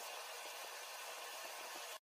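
Steady, faint hiss with no other sound, starting and stopping abruptly.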